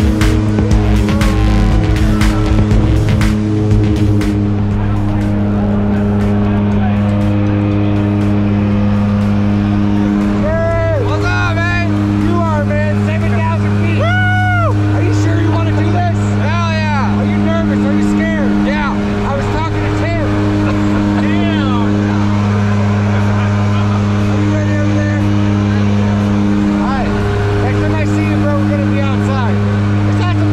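Steady drone of a skydiving plane's propeller engines heard inside its cabin during the climb, with people's voices shouting and laughing over it for a while in the middle.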